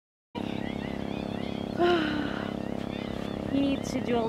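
Boat engine running steadily, starting abruptly about a third of a second in, with a woman's voice speaking briefly over it twice.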